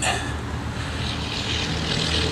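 A steady low engine drone with a hiss above it, growing slightly louder.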